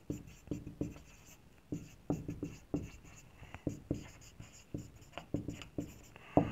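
Marker writing on a whiteboard: a run of short, irregular strokes as words are written, with a brief pause about a second in.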